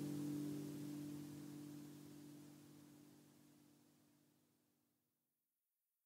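A last strummed acoustic guitar chord rings on and fades away, dying out to silence about five seconds in.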